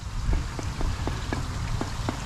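Small water plinks and drips at the surface of a fish pond around a hand dipped in the water, several a second at uneven spacing, over a low rumble.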